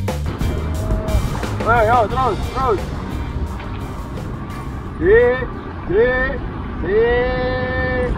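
A person's wordless vocal calls over a steady low rumble: a quick run of short wavering calls about two seconds in, then three drawn-out calls that rise and hold, the last and longest near the end.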